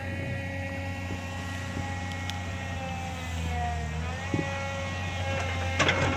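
An engine running steadily, heard as a low hum with several held tones that drift slightly in pitch. A burst of rustling noise comes near the end.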